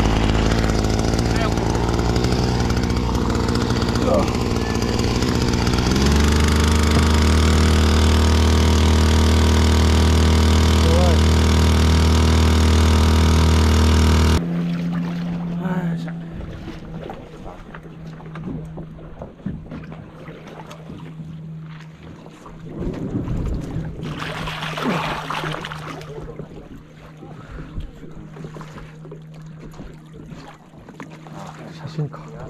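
Small petrol outboard motor running steadily, its note stepping up about six seconds in. About fourteen seconds in the loud engine sound stops abruptly, leaving a faint low hum with water and wind noise.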